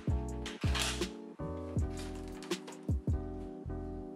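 Background music: plucked notes over a bass line in a steady rhythm, about two notes a second.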